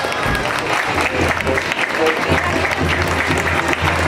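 A crowd of guests clapping, with music and a steady low bass note coming in during the clapping.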